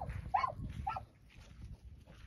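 A dog giving short, high-pitched barks, two of them about half a second apart in the first second, excited during agility play.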